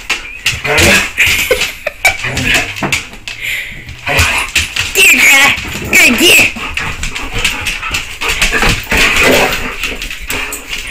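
Dogs playing and calling with high-pitched whines and yelps, rising and falling in pitch, again and again. Short knocks and scuffles run among the calls.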